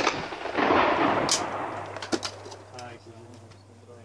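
A shotgun shot's blast echoing back off the surroundings and fading over about two seconds, followed by a few sharp metallic clicks as the break-action shotgun is opened.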